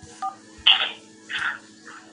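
A single short telephone keypad (DTMF) beep of two tones about a quarter second in, heard over a phone line with a low steady hum. A few short hissy bursts follow, the loudest just after half a second.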